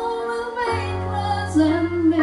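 A woman singing into a handheld microphone over backing music, holding long notes. A steady low bass note comes in under her voice less than a second in.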